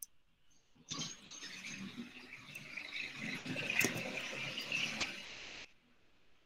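A crackling, rustling noise starts suddenly about a second in and cuts off sharply near the end.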